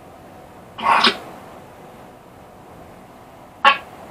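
A person coughs once, briefly, about a second in, and gives another short cough near the end.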